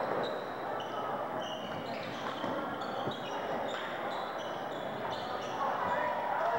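Basketball game on a hardwood gym floor: sneakers squeaking in many short, high chirps and a ball bouncing, over steady crowd chatter.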